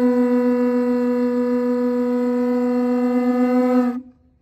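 Conch shell trumpets blown in one long, steady, loud note that cuts off just before the end.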